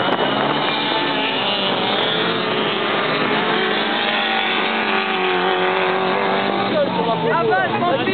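Several autocross race cars running hard through a bend, their engine notes rising and falling against one another as they pass.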